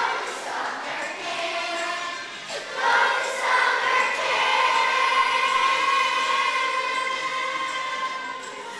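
Children's choir singing, holding one long note from about three seconds in.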